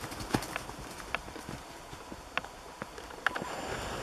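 Hooves of Jersey cows galloping over snow-covered ground: a handful of scattered, irregular thuds.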